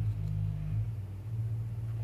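A low, steady background hum, its pitch shifting slightly just under halfway through.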